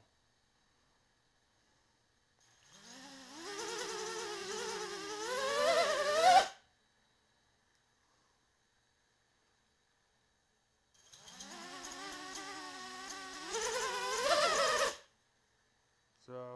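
Quadcopter's four 2204 2300 kV brushless motors whining twice, each time rising in pitch and loudness over about four seconds, then cutting off suddenly. The motors climb in speed by themselves with no throttle input, the idle fault the owner blames on the new KISS flight controller and 24 A ESCs.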